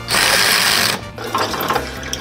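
Drill press boring into a metal part held in a vise: a loud rush of cutting noise for about the first second, then quieter machine sound.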